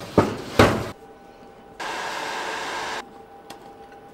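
Two knocks from the metal case of a server rack battery as it is handled and set in place, then a steady hiss lasting about a second that starts and stops abruptly.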